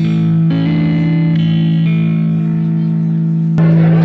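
Electric guitar played through effects, holding sustained chords that change a few times, then ending on a sharper, louder final chord near the end.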